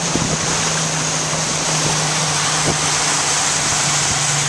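Outboard motor of a small boat running steadily under way: an even low hum beneath a constant hiss of wind on the microphone and rushing water from the wake.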